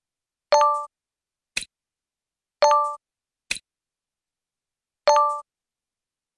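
Software sound effects of a digital textbook exercise as word cards are moved into answer boxes: three short bell-like chimes about two and a half seconds apart, each with a single quick click between it and the next.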